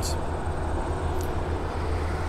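Steady low background rumble with faint hiss, unbroken and without distinct events.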